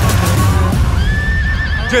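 A horse whinnying: one long call that starts about a second in, rises, then wavers. Loud music with a heavy low end runs under it throughout.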